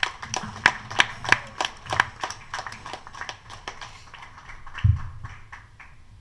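Applause from a small audience at the end of a song, individual hand claps close by, dense at first and thinning out over about five seconds. A single low thump near the end.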